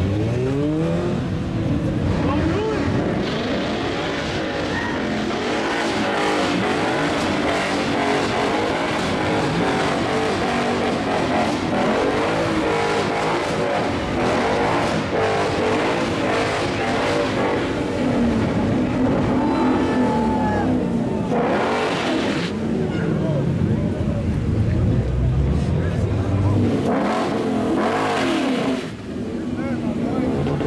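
Ford Mustang doing a burnout with its rear tyres spinning: the engine revs up and down repeatedly over the noise of the tyres squealing against the pavement. Voices from the onlooking crowd are heard alongside.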